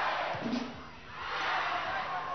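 Crowd of spectators in an indoor sports hall cheering during a volleyball rally. The noise dips about a second in and swells again near the end.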